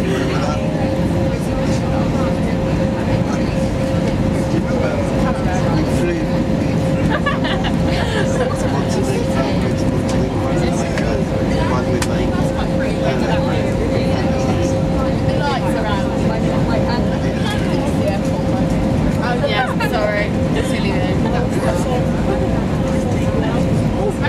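Steady cabin noise of an Airbus A320-family airliner on approach: a constant rumble of engines and airflow with a steady mid-pitched hum running through it. Faint passenger chatter mixes in underneath.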